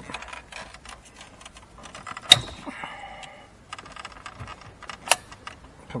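Plastic wiring-loom connectors and clips rattling and clicking as hands handle the loom behind a pulled-out car radio, with two sharp clicks, about two seconds in and again near five seconds, and a short squeak around three seconds in.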